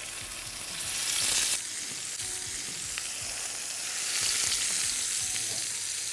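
Salted monkfish pieces sizzling and frying in hot oil in a frying pan, a steady high hiss that swells louder for about a second near the start and again later.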